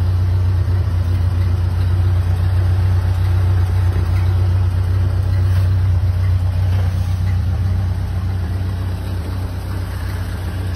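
1928 Ford Model A's flathead four-cylinder engine idling steadily, a low even hum that grows a little fainter near the end.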